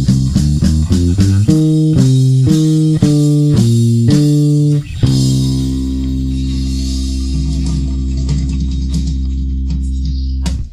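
Electric bass guitar with drums playing the ending of a song. Quick triplet figures over hi-hat give way to about five slow, held higher notes. About five seconds in comes a final low C, held with a ringing cymbal crash.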